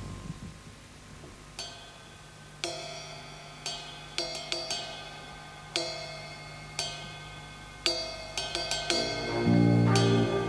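Drum-kit cymbal strikes opening a big-band jazz tune: single ringing hits about once a second, with quick clusters of lighter taps between some of them. Near the end the full band comes in, loud and low.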